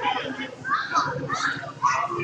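A group of young children talking and calling out over one another, with a few louder calls about a second in and near the end.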